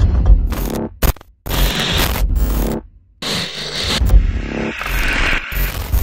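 Channel intro sound design: loud deep bass hits under harsh noisy glitch effects, cutting off abruptly into brief silences twice, just after one second and again near three seconds.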